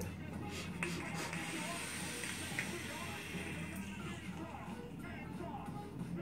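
Hissing of a sub-ohm vape's fused Clapton coil firing during a long draw, followed by the exhale of a large cloud, over steady background music.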